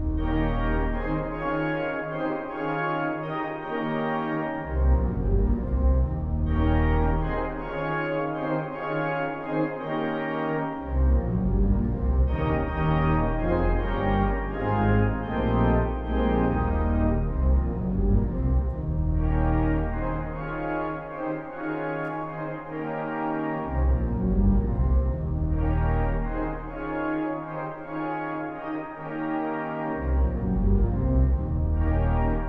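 Four-manual church organ playing a gospel-style spiritual arrangement with full chords, the rhythm played straight and boxy rather than with a gospel shuffle. Low pedal bass notes drop out and come back every few seconds.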